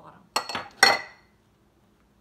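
A drinking glass clinking twice against hard dishware, the second clink louder, each with a short ringing tail.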